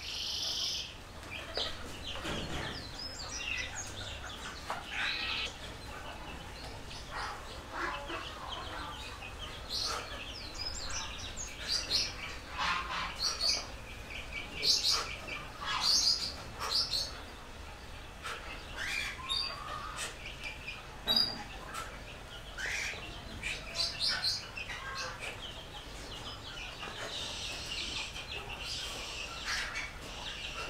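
Small birds chirping on and off, with many short calls and quick whistled notes over a faint steady background.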